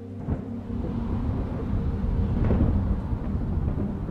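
Thunder: a sudden crack a third of a second in, then a low rolling rumble that builds to its loudest about two and a half seconds in and carries on.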